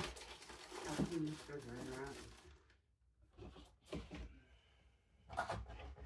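Faint, distant talking with short rustles and knocks of someone rummaging through things, looking for something.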